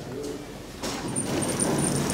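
KONE elevator landing doors beginning to slide open about a second in, a rising sliding rumble with a thin, intermittent high whine over it.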